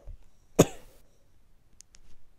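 A person's single short cough about half a second in. A couple of faint ticks follow near the end.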